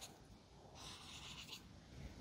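Faint stroke of an Ecoline watercolour brush pen's tip across sketchbook paper, a soft scratch lasting under a second in the middle of near silence.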